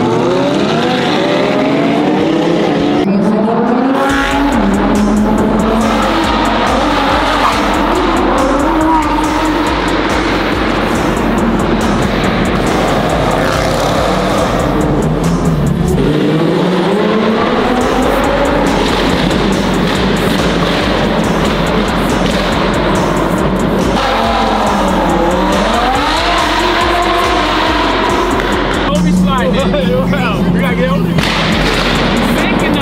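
Supercar engines revving, their pitch climbing in repeated sweeps as they accelerate through the gears, heard from inside a Lamborghini's cabin.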